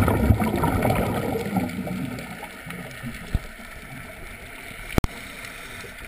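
Scuba diver's exhaled regulator bubbles gurgling up past the camera underwater, a burst that fades away over about two seconds, then steady underwater hiss. A single sharp click about five seconds in.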